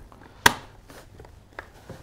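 A single sharp plastic click from the car seat's red-button belt guide as the button is pressed, followed about a second later by a fainter tick from handling the guide and belt.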